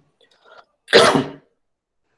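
A man sneezes once, a single short, sharp burst about a second in.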